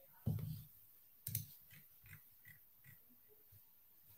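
A quiet room with two faint, soft taps about a second apart near the start, otherwise near silence.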